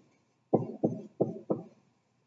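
Dry-erase marker writing on a whiteboard: four short, sharp strokes about a third of a second apart, starting about half a second in.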